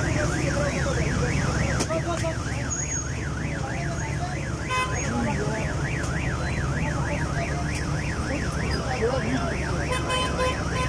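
Emergency vehicle siren in a fast yelp, sweeping up and down about three times a second without a break, over a steady low engine rumble and the murmur of a crowd.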